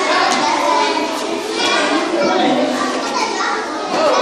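A roomful of kindergarten children talking and calling out all at once, a steady din of many overlapping young voices echoing in a large hall.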